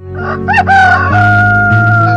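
A rooster crowing: one cock-a-doodle-doo, with two short rising notes followed by one long held note. It is laid over the opening of a music jingle, whose low steady notes come in about a second in.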